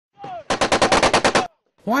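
Machine gun firing a burst of about eleven rapid shots lasting about a second, which then stops abruptly.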